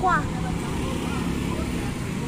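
Engine of a small mini-truck running as it drives slowly past, a steady low hum.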